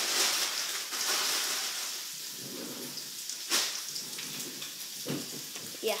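Graphite pencil scratching on paper as a line is drawn over to make it bigger and darker, strongest in the first couple of seconds and then lighter. A sharp tap comes about three and a half seconds in.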